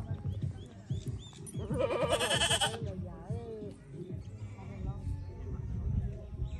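A goat bleating: one long, quavering bleat about two seconds in.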